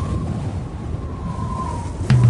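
Winter wind blowing steadily, with a low rumble and a faint wavering whistle.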